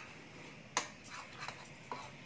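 Metal spoon stirring dry flour and spices in a plastic bowl: one sharp tap of the spoon against the bowl a little under a second in, then a few fainter ticks and scrapes.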